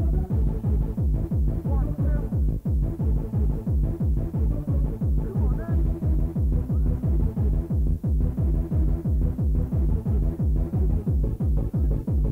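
Fast electronic dance music from a live club DJ mix, recorded on cassette, with a heavy kick drum and bass on a steady beat and synth melody lines above.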